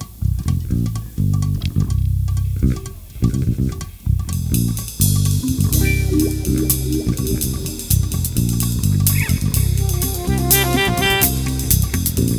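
Live jazz band beginning a tune: an electric bass line opens alone, and the drum kit with cymbals and the rest of the band come in about four seconds in. Near the end a saxophone adds a quick run of notes.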